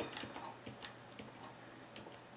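Faint, scattered clicks of a computer's controls, a few irregular ticks as the document is scrolled down.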